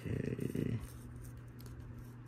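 A brief low, creaky hum from a voice in the first second, over the steady low hum of a mini fridge running.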